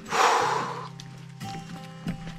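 A person's short, sharp breathy exhale in the first second, over quiet background music.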